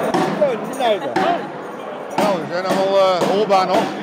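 Voices of several people talking nearby in a crowded, echoing hall, with a few sharp knocks among them.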